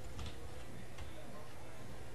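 A few faint computer keyboard clicks at the start, then a steady low background hum.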